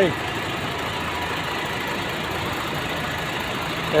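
Truck engine idling, a steady, even running sound.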